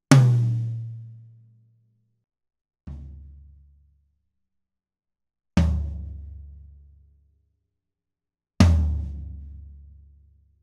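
Four single tom strikes on a Pearl Masters maple kit, about three seconds apart, each a low boom that dies away within about a second and a half. The first strike is higher-pitched and the second is softer. The toms carry gaff-tape cymbal-felt gates, which lift off the head at the strike and lay back down to shorten the ring.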